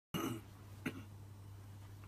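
A man's short cough or throat-clear right as the audio begins, then a single sharp click just under a second in, over a steady low hum.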